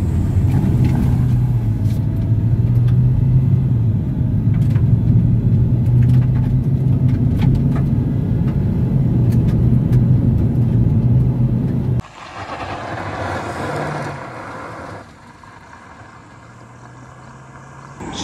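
Hyundai Verna automatic's engine under hard acceleration from a standstill, heard from inside the cabin as a strong steady drone whose pitch steps down a couple of times as the gearbox shifts up. About twelve seconds in it cuts abruptly to a quieter outdoor road sound.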